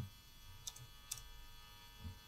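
Faint computer keyboard keystrokes: a few scattered clicks while code is typed.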